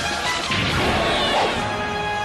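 A cartoon crash sound effect about half a second in, over background music.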